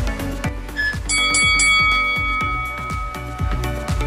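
Background pop music with a steady beat. About a second in, a bell chime sounds as the workout interval timer reaches zero, ringing on for about two seconds before it fades.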